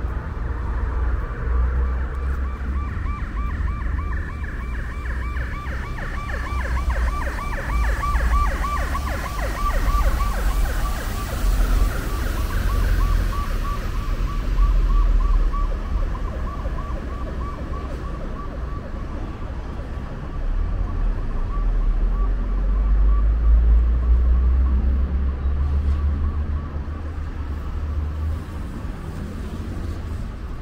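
Emergency vehicle siren with a fast warble, loudest in the first half and fading away later, over a low rumble of street traffic.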